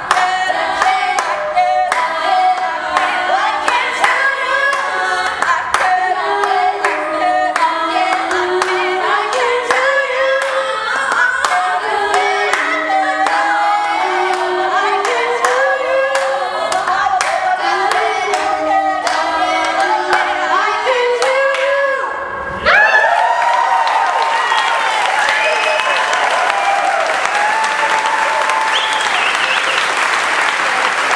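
Women's a cappella group singing in close harmony, with hand claps keeping a steady beat. The song ends about 22 seconds in and gives way to audience applause.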